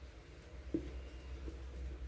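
Faint soft scrapes and light knocks of a silicone spatula working thick chocolate mousse-like mixture out of a plastic mixer bowl into a plastic tub, over a low steady hum.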